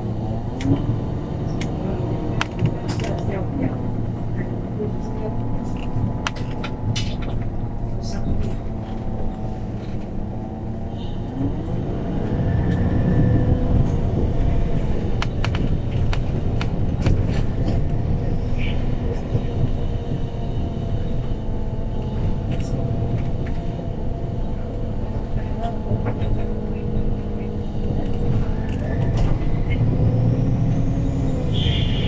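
Inside a MAN NL313F CNG city bus on the move: the gas engine and automatic gearbox drone, the note shifting with speed. It gets louder about twelve seconds in as the bus pulls harder, with frequent rattles and clicks from the cabin.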